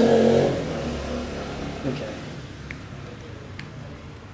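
Computer keyboard keys being typed as a password is entered: a few faint, separate keystroke clicks in the second half, after a man's brief voice at the start and a spoken word about two seconds in.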